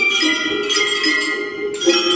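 Small hand bells rung together, playing a melody: bright ringing notes struck afresh about three times, each left to ring on into the next.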